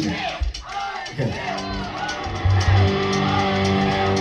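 A live rockabilly band of electric guitar, upright bass and drums playing. The music thins out for about the first second, then comes back fuller with held guitar and bass notes over cymbal ticks.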